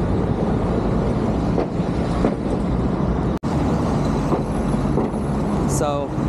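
Heavy road traffic passing close by: a dense, steady rumble of vehicle engines and tyre noise. The sound cuts out completely for a split second about halfway through.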